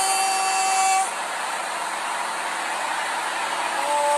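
A vehicle horn sounds one steady note for about a second and cuts off, followed by the steady noise of city street traffic.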